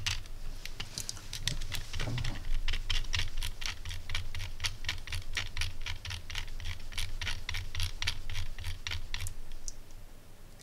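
Rotary encoder knob of a ZK-4KX buck-boost converter clicking through its detents as it is turned, about four or five clicks a second, stepping the output voltage up.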